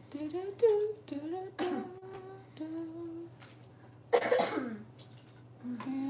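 A person's voice: indistinct murmured speech and vocal sounds, with one loud, harsh cough about four seconds in.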